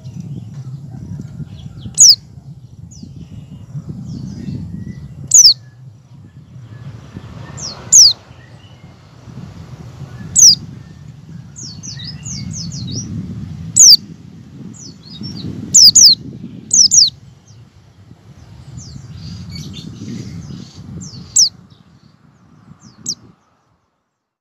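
A white-eye (pleci) giving sharp, high calls that slide downward, one every two to three seconds and sometimes doubled, with softer twittering between them. Under the calls runs a low rumble, and the sound cuts off shortly before the end.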